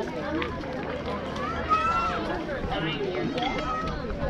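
Children and adults talking and calling out on a tee-ball field, with one sharp knock a little before halfway: an aluminium youth bat hitting the ball off the tee.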